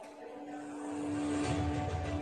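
Music from a short film's soundtrack, with a held note, and a low rumble that swells in about halfway through and grows louder.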